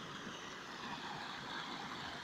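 Steady rushing of muddy runoff water flowing along a flooded dirt street and spilling over its ruts.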